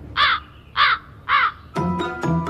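Three crow caws, evenly spaced a little over half a second apart: the stock comic sound effect for an awkward silence. Light mallet-percussion music starts just before the end.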